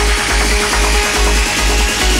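Instrumental uplifting trance music: a steady kick drum about twice a second under fast-repeating synth notes, with a synth line slowly rising in pitch.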